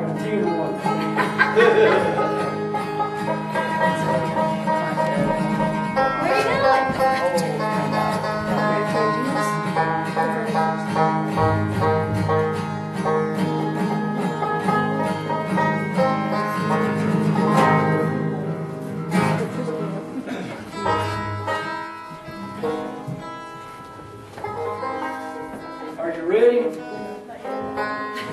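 Bluegrass band playing a tune at a fast pace: picked banjo over acoustic guitar and upright bass.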